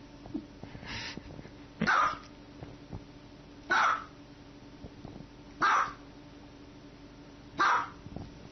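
Small white dog barking: four sharp, loud barks, evenly spaced about two seconds apart.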